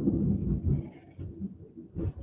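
Thunder from a close lightning strike, a deep low rumble that fades away after about a second.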